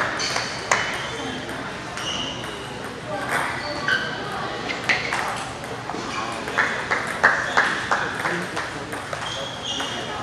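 Table tennis ball clicking off rackets and bouncing on the table in irregular sharp ticks, some with a short ringing ping. There is a quicker run of clicks near the three-quarter mark, over background talk in a large hall.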